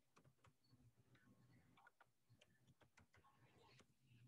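Near silence, with very faint, irregular clicks of computer keyboard typing.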